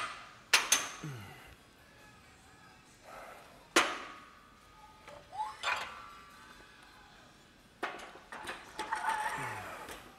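Barbell and weight plates clanking as plates are loaded onto the bar in a squat rack: a string of sharp metal clanks with short ringing, spaced out irregularly, with a denser cluster near the end.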